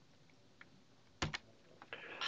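Near-silent room tone, broken a little past a second in by two quick sharp clicks close together, then a few faint ticks.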